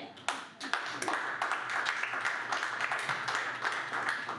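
Audience applauding: many hands clapping in a dense, irregular patter that starts a moment in, with some voices mixed in.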